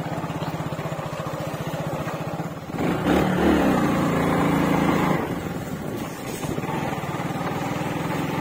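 Bajaj Pulsar motorcycle's single-cylinder engine running steadily while riding, with a louder stretch starting about three seconds in and lasting about two seconds.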